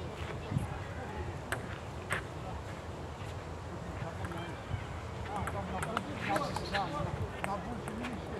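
Table tennis ball clicking off bats and an outdoor table in a rally: a few sharp taps at uneven spacing in the first couple of seconds, then faint voices.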